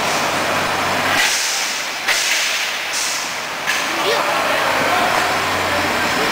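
Diesel engine of a Mercedes-Benz Unimog road-rail shunting truck running with a low hum while it shunts a passenger coach. In the middle, three sharp bursts of compressed air hiss in quick succession, typical of air brakes.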